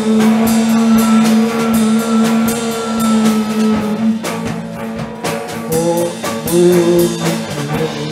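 Live noise-pop band playing on drum kit and amplified instruments. A loud droning note is held for about four seconds, then gives way to shorter, shifting notes, with drum hits throughout.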